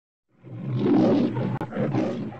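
A lion's roar used as an intro sound effect: it starts a moment in and comes in two rough swells with a brief break between them.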